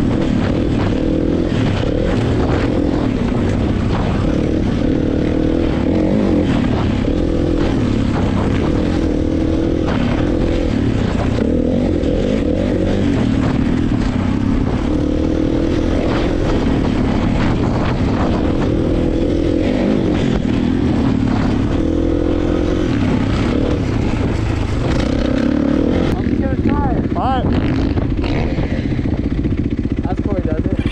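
Kawasaki KX450 four-stroke single-cylinder dirt bike engine running as it is ridden along a dirt trail, its pitch rising and falling with the throttle. The engine note changes in the last few seconds.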